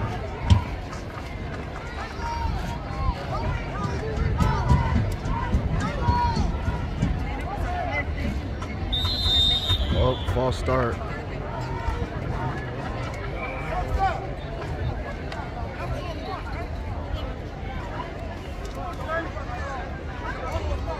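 Chatter and scattered voices of spectators and sideline people at an outdoor football game, over a steady low rumble, with a short high tone about nine seconds in followed by a louder shout.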